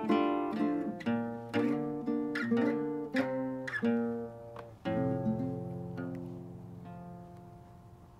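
Guitar music: picked notes, then a final chord about five seconds in that is left to ring and fade away, ending the piece.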